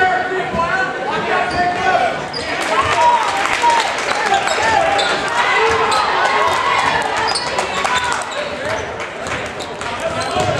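Basketball game sounds in a gymnasium: the ball bouncing on the hardwood floor and sharp impacts from the court, under continuous overlapping chatter of spectators.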